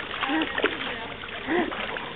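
A baby's bare feet kicking in foamy water, splashing with quick irregular splats. Two short voice sounds come over the splashing, about half a second and a second and a half in.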